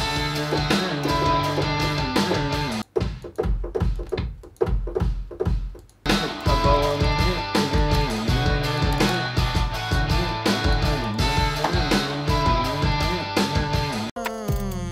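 Pop-punk beat playing back from the production software: a guitar melody over programmed drums with a driving kick pattern. About three seconds in, the guitar drops out for about three seconds, leaving the drums alone, and then comes back in. The kick is layered with a second kick to hit harder.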